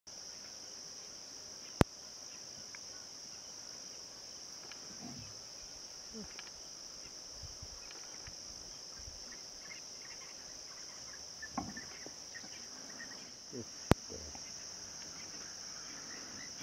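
Steady, high-pitched chorus of crickets, with two sharp clicks, one about two seconds in and one near the end, and a few faint low sounds in between.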